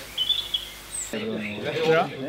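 Birds chirping briefly over a background hiss. About a second in, the sound cuts abruptly to people's voices talking.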